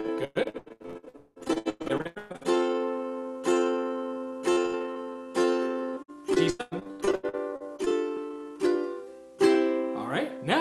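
Ukulele strummed in quarter notes, about one strum a second, each chord left to ring, moving through the progression C, A minor, F, G7 with a few chord changes along the way.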